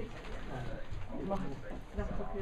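Indistinct low voices of people talking, with no clear words, over shop background noise.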